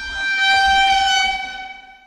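A steady horn-like tone with strong overtones, held for about two seconds, swelling and then fading out just after the end.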